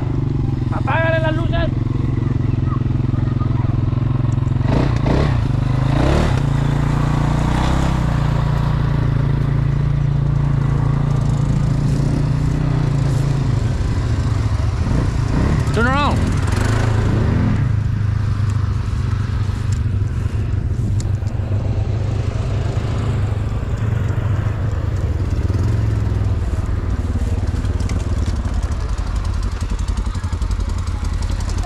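ATV engines idling with a steady low hum that shifts in tone once about halfway through.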